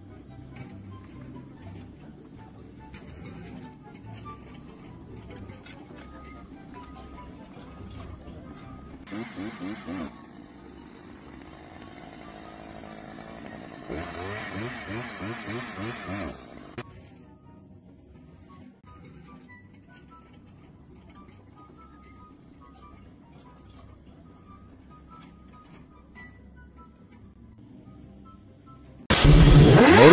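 Background music throughout. About halfway through, a Stihl two-stroke powerhead drilling into a wooden post runs for about three seconds, its pitch wavering, after a shorter engine burst a few seconds earlier. About a second before the end, a motorcycle engine comes in suddenly and much louder.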